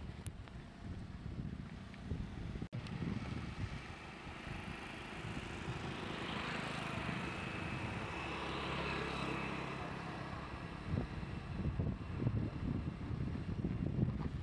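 Wind gusts buffeting the microphone, with a motor vehicle passing along the road: its sound swells over a few seconds, peaks about halfway through and fades away.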